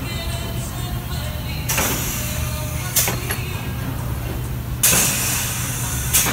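Automatic screen-printing press running with a steady low hum, broken by short bursts of air hiss about two seconds in, at three seconds and near five seconds as its pneumatic print heads cycle.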